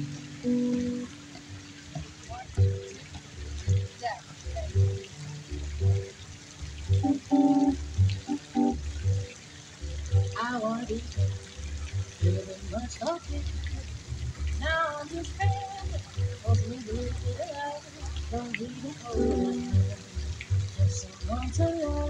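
A small jazz trio playing: an upright bass plucked in a steady pulse of low notes with an electric guitar playing over it, and a woman's voice coming in partway through.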